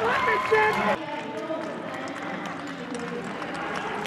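Loud, excited voices in a large arena, cut off abruptly about a second in, followed by quieter, indistinct voices and room ambience.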